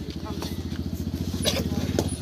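A small engine running steadily with a fast, even low throb, and a couple of short sharp sounds over it.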